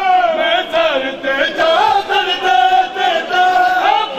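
Men chanting a noha, a Shia lament, in one loud melodic line that bends and glides.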